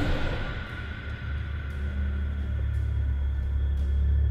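Horror film score: a loud stinger fades out in the first moments, leaving a low, sustained rumbling drone.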